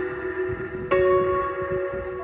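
Background music of slow, bell-like ringing notes, each one held and fading, with a new note struck about a second in.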